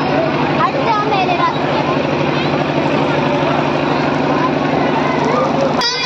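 A steady low droning hum with a fast even pulse, machine-like, under scattered crowd voices; it cuts off suddenly near the end.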